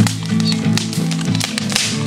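Acoustic guitar strummed in a steady rhythm, chords ringing under sharp, frequent strokes.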